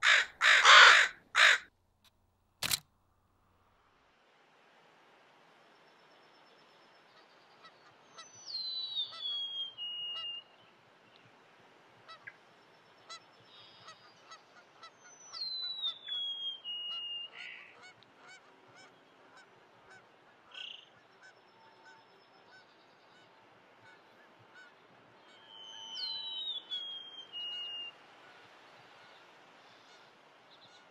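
A few short, loud noise bursts and a click in the first three seconds, then faint outdoor ambience in which a bird sings a high whistled song that falls in pitch, three times, about eight seconds apart.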